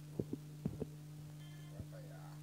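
Steady low electrical hum with a few soft, dull thumps: two quick pairs in the first second and a single one near the end.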